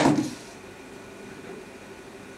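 A single sharp clack of granite curling stones knocking together on the ice, ringing off within about half a second.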